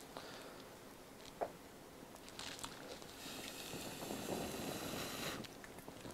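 A person blowing steadily into a small wood-burning camp stove for about three seconds, feeding air to a smouldering fire of wet wood so that it flares back into flame; the blowing stops abruptly near the end. A single small click comes about a second and a half in.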